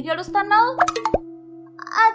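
A cartoon voice speaking over soft background music with steady held notes. About a second in there are three quick clicks from short sound effects, and the voice returns near the end.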